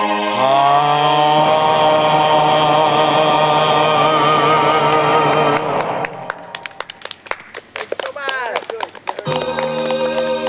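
A male crooner holds a long final sung note with vibrato over a backing track, ending the song about six seconds in. A few seconds of scattered clicks and a brief spoken word follow. Then a sustained electronic organ chord starts the next song's backing track.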